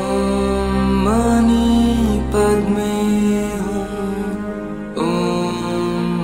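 A Buddhist mantra sung slowly in long held phrases, each new phrase starting with a short upward slide (at the start, about a second in, and near five seconds), over a steady low drone.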